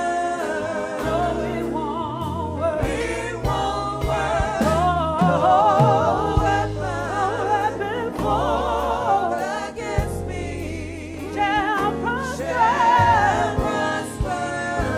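Gospel praise singers singing with a wide vibrato over an accompaniment of long held bass notes.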